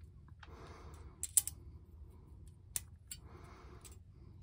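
Handling of a wind spinner's plastic blades and small metal hardware: a few sharp clicks, two close together just after a second in and another near three seconds, with soft breaths between.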